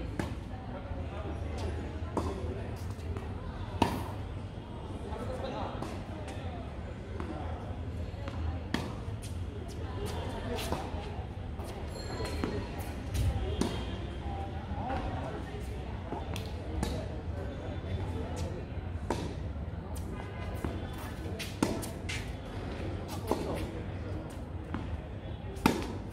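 Tennis balls struck by rackets and bouncing on a hard court during a rally: sharp pops at irregular intervals, the loudest about four seconds in and just before the end.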